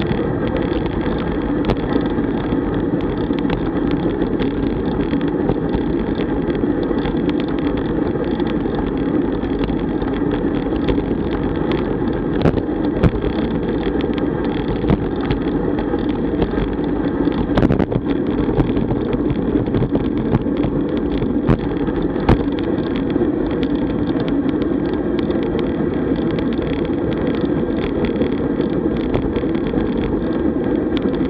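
Steady rushing wind and road noise picked up by a camera on a road bike rolling at about 33 km/h, with scattered small clicks and knocks.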